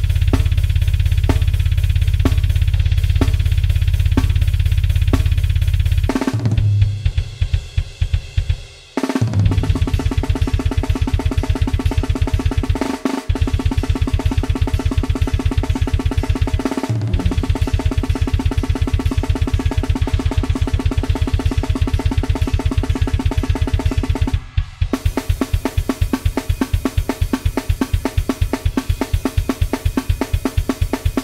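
Programmed grindcore drum kit at 250 bpm, played with Superior Drummer samples: a fast beat with a continuous rapid bass drum. About six seconds in it breaks into a falling tom fill, it pauses briefly twice more, and near the end it switches to a different beat.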